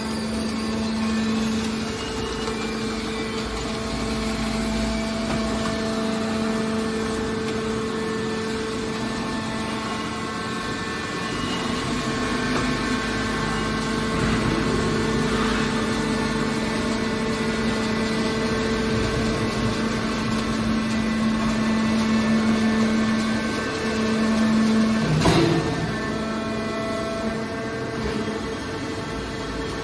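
Hydraulic scrap iron baler running, its hydraulic pump unit humming steadily, with one sharp metal clank near the end.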